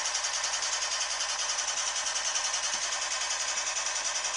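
Machine-gun sound effect firing a steady, rapid stream of shots, about ten a second.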